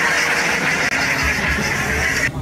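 A steady, loud hiss over the low rumble of a bus.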